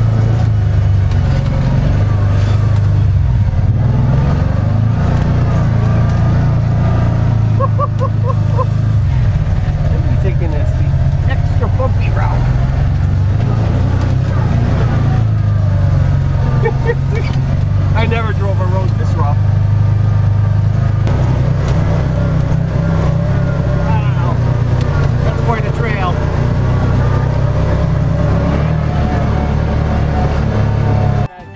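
UTV engine running steadily under way, a constant low drone heard from inside the open cab, with muffled voices over it in the middle stretch.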